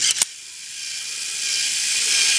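Two quick clicks, then the motorized film-advance winder of a plastic 35mm autofocus point-and-shoot camera whirring steadily as it turns the take-up spool, growing slowly louder.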